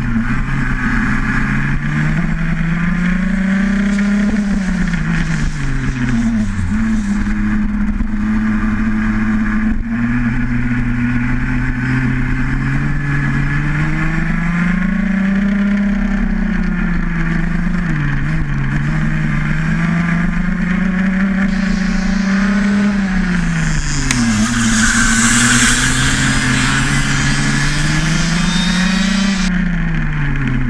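A 125cc two-stroke kart engine at racing speed. Its note climbs steadily as it accelerates, then drops sharply when the throttle is lifted, several times over. A rushing hiss rises over it for a few seconds near the end.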